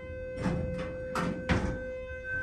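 Elevator door nudging buzzer: a steady electronic tone as the car's doors go into nudge mode, the signal that they have been held open too long and will now close on their own. A few short knocks sound over it.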